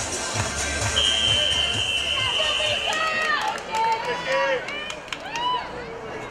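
A referee's whistle blows one long, steady blast of about two seconds, the signal for swimmers to step up onto the starting blocks, over background music that fades out soon after. Short shouts and whoops from spectators follow.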